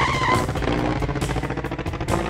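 Animated rocket-ship sound effect: a steady, engine-like buzz that starts suddenly, with a few held musical tones over it.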